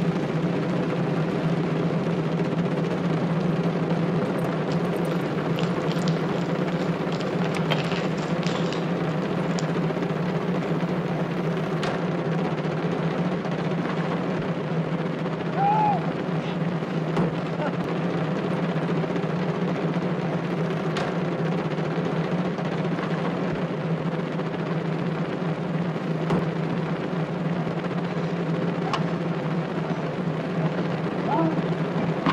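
A long, even drum roll with a steady low pitch, unbroken and constant in loudness, like the roll that accompanies an execution.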